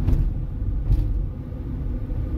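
Low, steady rumble of a car's engine and tyres heard from inside the cabin as it rolls slowly in heavy traffic, with a couple of faint taps about a second apart.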